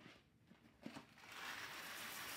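Near silence with a light tick, then from about a second in a faint, steady rustle: a box of ditalini pasta being handled.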